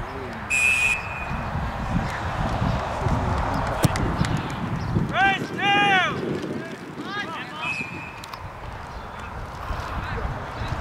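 A referee's whistle gives a short sharp blast about half a second in, followed by loud, high-pitched shouted calls a few seconds later and a second, fainter whistle tone near the end, over constant outdoor field noise.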